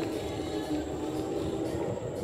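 Razor E200 electric scooter riding along: a steady whirring hum from its electric motor and chain drive, over the noise of the small tyres rolling on pavement.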